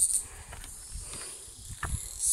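High-pitched insect chorus in woodland. It is loud and pulsing at first, then drops to a faint hiss soon after the start. A few soft footfalls on stone steps sound during it.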